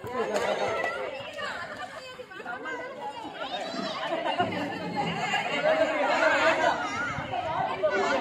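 Crowd chatter: many voices talking and calling out over one another at once.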